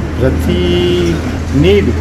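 A vehicle horn sounds once, a steady honk of just over half a second starting about half a second in, over a man's speech and a low steady hum.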